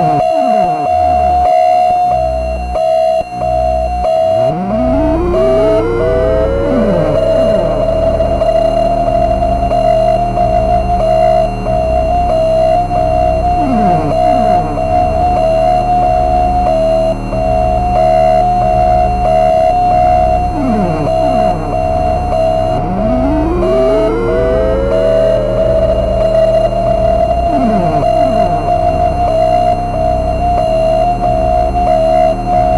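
Experimental electronic music from oscillators: a steady, pulsing high tone held throughout, with clusters of swooping pitch glides rising up into it twice, over a pulsing low bass.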